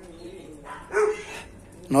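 Small dog whining, with a short, louder yelp about a second in; it is eager to follow its owners, who have just gone out.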